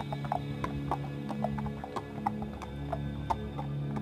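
Hoofbeats of a horse being ridden past on a dirt track, sharp irregular clops, over a low steady music drone.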